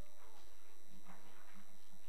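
Room tone dominated by a steady electrical hum and hiss from the sound system, with a few faint clicks and rustles.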